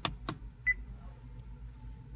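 Two clicks as the Acura's centre-console interface dial is pressed, then a moment later a single short, high beep from the infotainment system acknowledging the selection.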